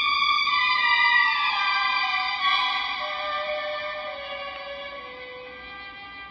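A mono vinyl record played through a pair of speakers wired in series: an orchestral intro of held high notes that slide slowly downward in pitch and gradually fade.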